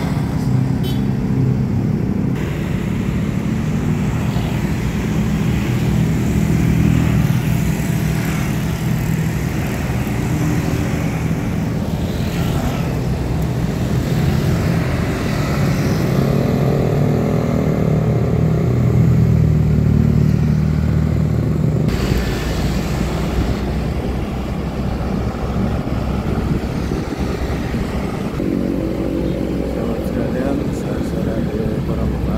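Steady engine drone and road noise from riding along in busy city traffic of motor scooters and cars. The low engine hum changes about two thirds of the way through.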